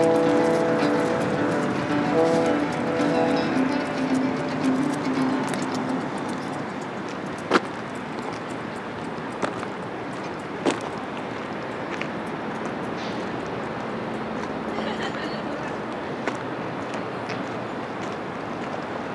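The last held chord of a small acoustic band, with acoustic guitar, dies away over the first few seconds. It gives way to steady outdoor ambience with a handful of sharp clicks around the middle.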